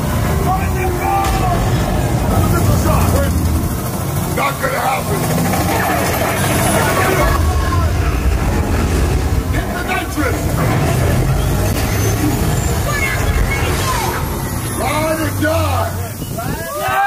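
Loud theme-park ride soundtrack for a projected car chase. Car engine and vehicle effects sit over a heavy, steady low rumble, with voices and music mixed in.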